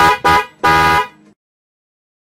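A horn sound effect honking three times: two short toots, then a longer honk.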